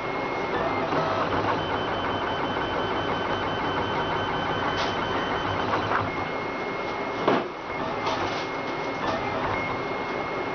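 RapidBot 2.0 3D printer printing a part: its stepper motors whine in steady high tones that switch on and off as the print head changes moves, over a continuous mechanical hiss. A sharp click sounds about seven seconds in.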